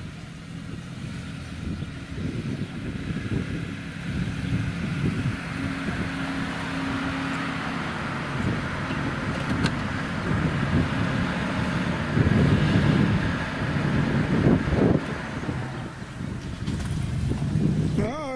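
A 1991 Buick Reatta's 3.8-litre V6 runs at low speed as the car drives up and stops close by. It grows louder as it nears and holds a steady low hum.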